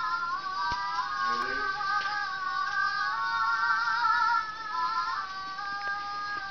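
Electronic tune from a child's musical toy jewelry: a thin melody of a few notes held together with a warble, stepping from note to note.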